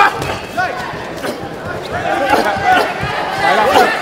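Ringside voices shouting, with crowd noise in a large arena, broken by several sharp thuds of gloved punches landing, the first right at the start.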